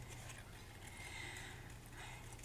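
Quiet room tone with a faint steady low hum, and faint soft rasping of scissors cutting through paper.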